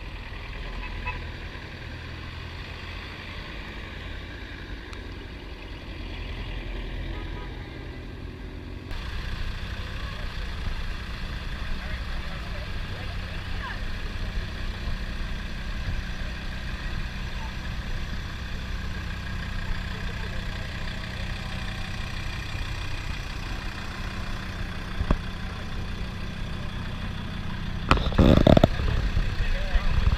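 Land Rover engines running: first one vehicle driving across the tarmac, then a steady mix of engine rumble and indistinct voices. A short, loud, low rumble comes near the end.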